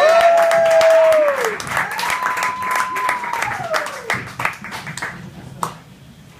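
Audience applauding a comedian's introduction, with two long whooping cheers: one right at the start and another about two seconds in, each falling off at its end. The clapping thins out and stops about five seconds in.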